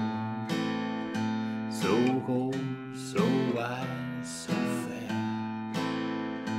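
Acoustic guitar playing a minor-key blues chord progression in A minor with a root-note strum: the thick bass root of each chord plucked, then the rest of the chord strummed with down strums, in a steady beat.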